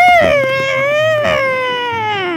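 A voice imitating a race car's tyre skid, "skrrrrt", as one long held call that rises briefly and then slides slowly down in pitch.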